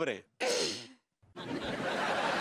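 A breathy sigh with a faintly falling pitch. About a second and a half in, a steady wash of noise starts and keeps going.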